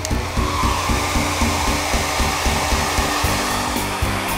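Handheld hair dryer blowing steadily on freshly painted gouache to dry it.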